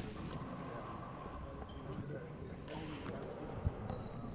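A handball bouncing on the hardwood court floor, one sharp smack near the end, over low court ambience with faint voices.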